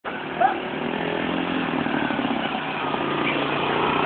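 Small ATV engine running steadily as the quad rides across the yard, growing a little louder as it comes closer. A short high chirp about half a second in.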